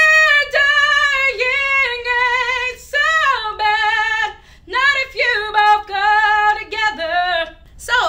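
A woman singing a musical theater song unaccompanied in a strong chest belt, holding long notes with vibrato. She breaks briefly for breath twice, about three and four and a half seconds in, and the last phrase ends just before the close.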